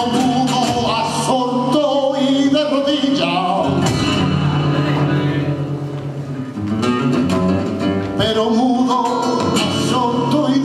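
A male flamenco singer singing with ornamented, wavering vocal lines, accompanied by flamenco guitar and cajón. Just before the midpoint the voice stops and the guitar carries on alone for a few seconds, then the singing returns.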